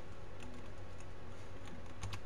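Computer keyboard typing: a handful of light key clicks spread over the two seconds, over a steady low hum.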